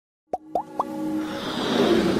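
Logo-intro sound design: three quick pops, each rising in pitch, in fast succession, then a swelling whoosh that builds in loudness.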